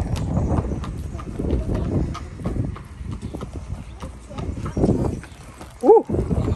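Horses walking, their hooves clip-clopping irregularly on hard ground.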